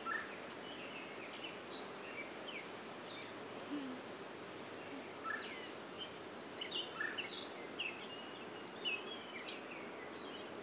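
Small birds chirping in short, scattered calls over a steady hiss of outdoor background noise, the calls coming more often in the second half.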